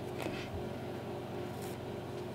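A faint steady hum with two soft, brief rustles of waxed thread drawn through a leather moccasin's stitched edge, one near the start and one near the end.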